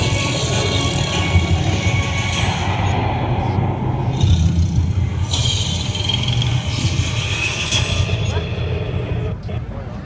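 Music playing along with the steady low running of the engine that moves a large flower-parade float, with voices from the crowd.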